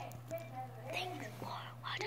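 A child whispering softly, with a steady low hum underneath.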